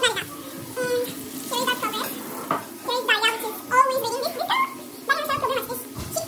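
People talking, with the words not made out, over faint steady kitchen background noise.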